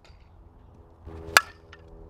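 A softball bat striking a tossed softball once, a sharp crack about a second and a half in.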